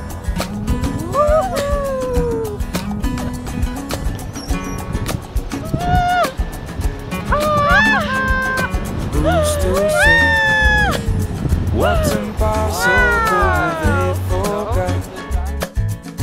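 Background music, with a woman's excited high-pitched whoops and squeals over it: several cries that rise and then fall in pitch, the loudest around the middle.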